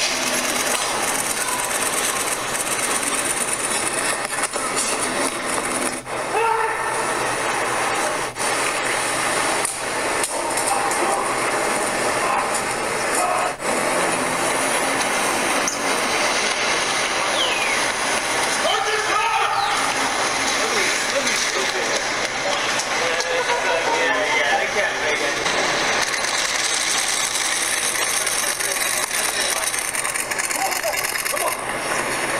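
Steady, dense outdoor street noise with indistinct voices of onlookers mixed in, recorded on a handheld phone, with a few brief drops in level.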